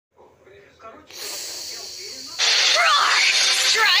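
Heavily distorted cartoon soundtrack: faint voice at first, a sudden hiss about a second in, then a loud, high-pitched character voice with gliding, warbling pitch from about two and a half seconds.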